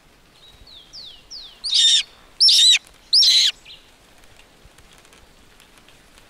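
A bird of prey calling: a few faint, falling chirps, then three loud, shrill calls about two-thirds of a second apart.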